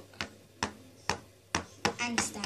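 Plastic toy horse's hooves tapping on a board as it is moved around the arena by hand, five sharp taps about half a second apart.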